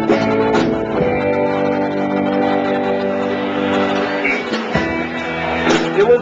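Live rock band playing an instrumental stretch between sung lines: guitars ringing out held chords, freshly struck near the start and again near the end.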